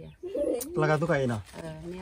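A man's voice in a loud, drawn-out call whose pitch falls steeply, just after a short low cooing sound and a click.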